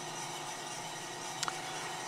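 Drum coffee roaster running steadily with its gas burner off, shortly after the beans are charged: a fairly quiet, even hum from the turning drum and fan, with one faint click about a second and a half in.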